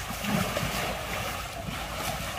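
Water sloshing and splashing in a plastic tub as a baby elephant moves about in it during its bath, a steady rushing noise with a few soft low knocks.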